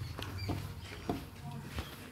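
Whiteboard duster being rubbed across a whiteboard to erase it, giving a string of short, high squeaks and scraping strokes.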